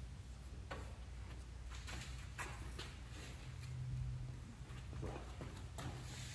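Quiet workshop: a steady low hum with a few faint taps and handling noises as resin-soaked carbon-fibre cloth and a plastic resin cup are handled.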